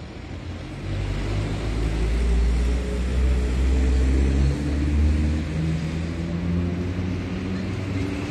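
A motor vehicle's engine running close by: a low rumble that builds about a second in and eases off near the end, with faint engine tones shifting in pitch.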